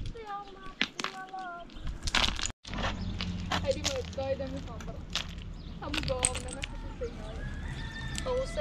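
Loose stones clacking and knocking as they are picked up by hand and dropped onto a pile, many short sharp clicks, with voices talking over them.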